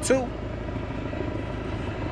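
Steady low rumble of distant engine noise after one brief spoken word at the start.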